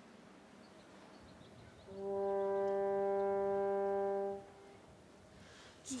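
A single steady instrumental note held for about two and a half seconds, the starting pitch given to the choir, starting and stopping cleanly. The choir begins to sing right at the end.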